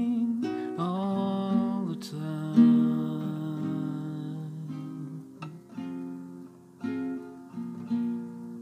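Nylon-string classical guitar strummed in slow chords, each chord struck and left to ring and fade, as a slow ballad accompaniment.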